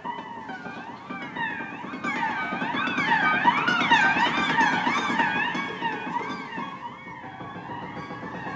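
Contemporary chamber ensemble of harp, flute, violin and grand piano playing, with the piano's strings played by hand inside the instrument. Several high pitches slide up and down in waves, loudest around the middle.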